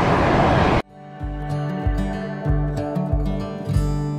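A steady rushing hiss of steam venting from a boiling hot spring, cut off abruptly just under a second in. It gives way to guitar music with a bass line.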